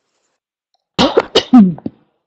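A person's voice: silence, then about a second in a brief, loud run of a few quick vocal sounds, the last one falling in pitch.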